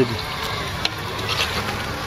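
Tracked robot platform on the move: a steady noise from its drive and tracks, with a brief click just under a second in.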